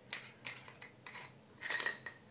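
Light metallic clicks and scrapes as a metal lightsaber hilt is twisted open and handled, with a brief ringing clink near the end.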